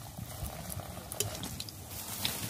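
Chana dal puri frying in hot oil in an iron wok: a steady sizzle with scattered small pops.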